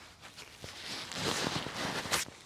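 Bialetti moka pot sputtering and hissing as the last water and steam push up into the top chamber after the gas is turned off: the end of the brew. The hiss starts faint and builds over the second half.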